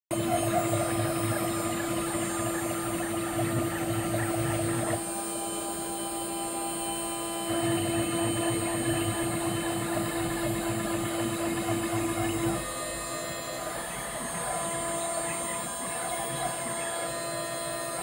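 CNC milling machine spindle running with a steady hum-like whine as a small end mill cuts a bait cavity into an aluminum mold block. The cutting noise swells and eases in stretches, quieter from about five seconds in, louder again from about seven and a half, and easing off again after about twelve seconds.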